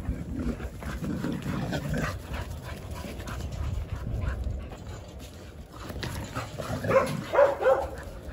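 Jindo dogs playing, their paws scuffling over dry leaves and dirt, with two or three short, loud dog vocalisations about seven seconds in.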